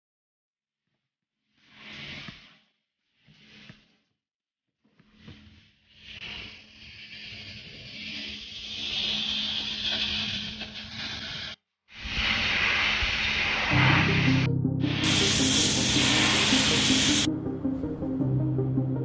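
Three short bursts of hissing noise, then a rushing hiss that swells, drops out briefly and returns louder. Music with a steady low tone comes in under it in the last few seconds, with a louder full rush for about two seconds.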